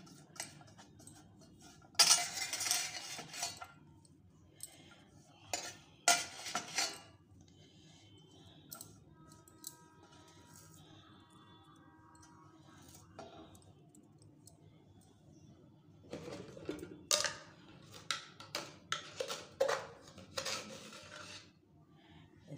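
Steel utensils clinking and scraping against a steel mixing bowl, in a few clattering bursts, with a run of quick clinks and scrapes near the end.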